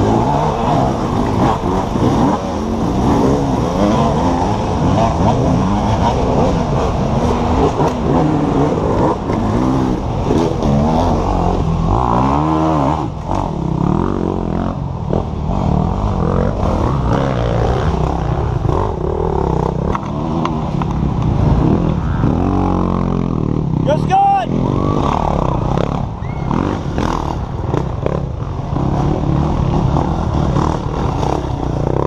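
Off-road racing motorcycles revving and passing on a dirt trail, several engines overlapping, their pitch rising and falling as riders work the throttle. One bike's engine revs up and back down sharply near the end.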